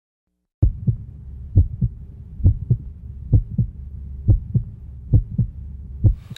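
Heartbeat sound effect: six double low thumps, about one pair a second, over a steady low drone, starting about half a second in after silence.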